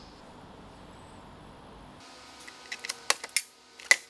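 A quiet hiss of room tone, then from about halfway a run of short, sharp clicks and snaps as a vehicle's rear-door trim panel is pried away from the door, its retaining clips popping loose.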